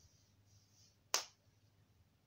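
A single sharp click about a second in, dying away quickly, against faint soft hissing.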